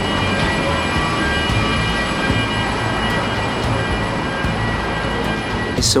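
Steady machine noise of a parked airliner at its cabin door: a constant rumble with a thin, unchanging high whine, from the aircraft's air-conditioning and auxiliary power unit.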